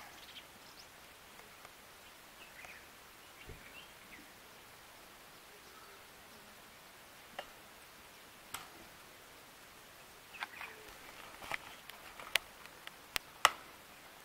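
Quiet outdoor background with a few faint, short high chirps, then a run of sharp clicks and knocks in the last few seconds, the loudest near the end.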